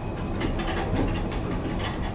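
Thyssen lift's automatic sliding car and landing doors starting to open as the car arrives at a floor: a steady low hum from the lift with a run of light clicks and rattles from the door mechanism.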